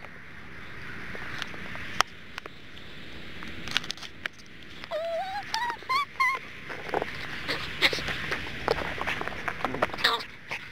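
A dog tugging and tearing at a fabric mat at close range: rustling, scuffing and irregular knocks and bumps. About halfway through comes a brief high, wavering cry that rises in pitch.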